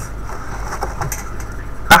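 Steady low electrical hum with faint room hiss, and a few faint light taps and rustles from a cardboard cracker box being handled.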